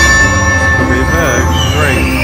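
Buffalo Gold slot machine's free-game bonus music over a steady bass beat, with a ringing chime as the reels land that holds for about a second, then a short warbling sound near the end.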